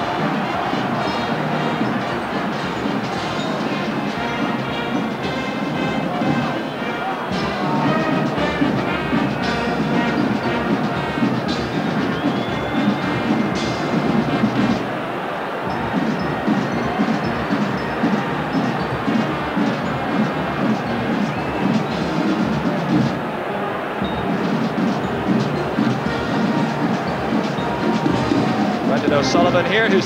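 Brass marching band playing parade music, with the noise of a large stadium crowd beneath it.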